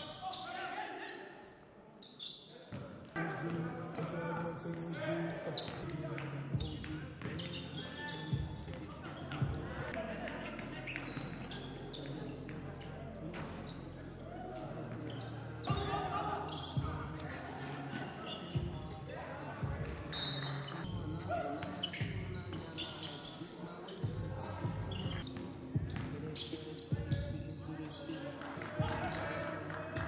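Basketballs bouncing on a hardwood gym floor in irregular sharp knocks, with players' indistinct voices.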